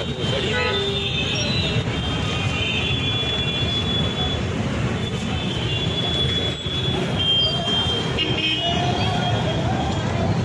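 Busy street traffic, with vehicle horns tooting at intervals over a steady engine rumble and background voices.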